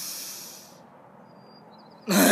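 A person's deep breath, a loud airy hiss that fades out within the first second, followed by quiet outdoor background noise.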